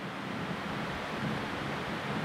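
Electric pedestal fan running: a steady, even noise.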